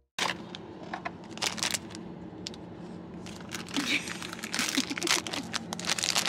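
Foil wrapper and cardboard packaging of a disposable film camera crinkling and rustling as it is handled, in a run of irregular crackles and clicks over a steady low hum.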